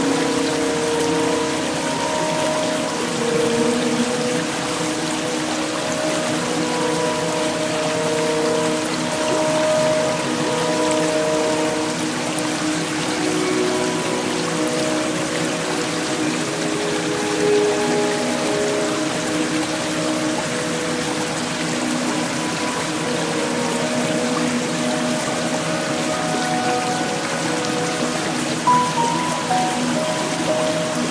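Steady rushing hiss of water falling down a stepped cascade, mixed with slow background music of long held notes.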